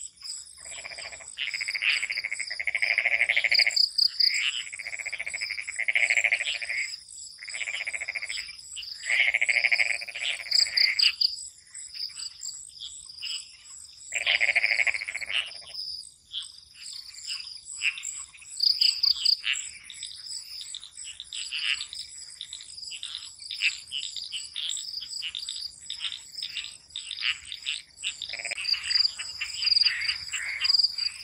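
A chorus of frogs, calling in repeated croaks about a second long with short pauses between, many in the first twelve seconds, one more in the middle and another near the end. Crickets trill steadily underneath throughout.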